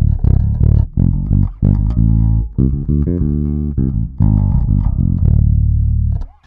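Boldogh Jazzy 5 five-string electric bass played through a Prolude KO750 bass amp and 2x12 cabinet: a quick run of plucked notes, ending on one long held note near the end.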